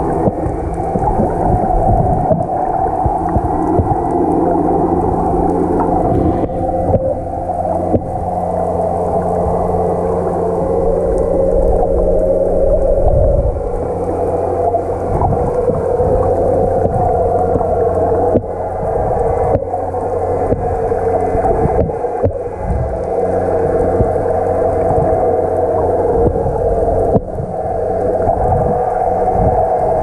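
Steady underwater hum with several even, unchanging low tones, heard through a camera's waterproof housing, with scattered faint clicks.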